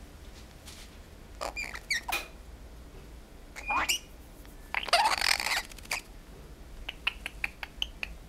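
Blue-headed pionus parrot making short squeaky calls, a rising squeak, then a louder, harsher squawk about five seconds in, followed by a run of quick clicks near the end.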